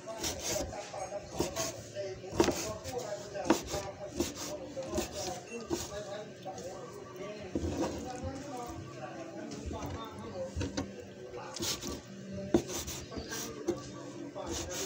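Kitchen knife cutting on a wooden cutting board: irregular knocks of the blade against the board, about one or two a second, with scraping in between.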